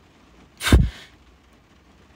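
A single short, sharp puff of breath blown close to the phone's microphone, like a quick exhale or scoff after a laugh, a little before the middle.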